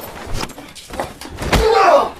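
A few light knocks, then a heavy thump about one and a half seconds in, followed by a short voice-like cry.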